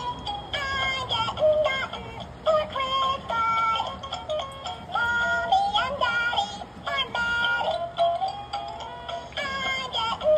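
Gemmy animated Christmas squirrel plush playing a Christmas song through its built-in speaker, sung in a high-pitched synthetic voice over a musical backing.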